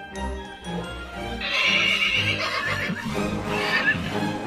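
A horse neighing: a long whinny from about a second and a half in, then a shorter one near the end, over background music.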